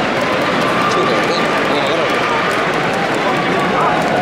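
Crowd of spectators chattering, many voices overlapping into a steady murmur with no single speaker standing out.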